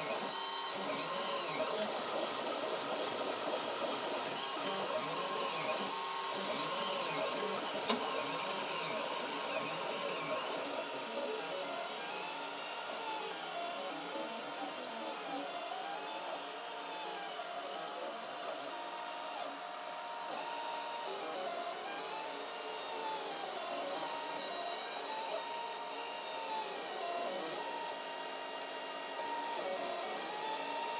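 3D printer stepper motors whining as the print head traces round perimeters. The pitch rises and falls in a repeating arc about every second and a half, jumbled in the first ten seconds and regular after that.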